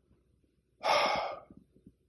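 A man takes one audible breath, about a second in, lasting about half a second.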